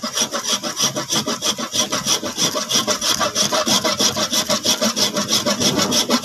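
A handheld grater rasped quickly back and forth over a hard block of baked salt, an even run of gritty scraping strokes, several a second, grinding the salt into powder.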